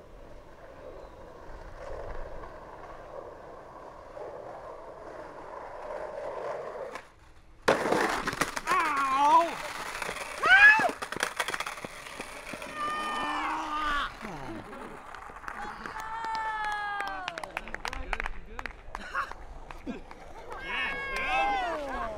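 Faint outdoor background, then, about a third of the way in, a group of young men suddenly shouting and whooping in excitement: many long yells that rise and fall in pitch, with a few sharp clicks among them.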